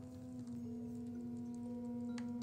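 Soft ambient background music of several sustained pure tones, with further held notes coming in about half a second and a second in.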